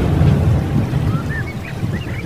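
A deep rumble with short bird chirps coming in about a second in, part of the programme's intro sound effects.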